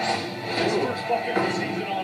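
Speech over background music, played back from a basketball highlight video.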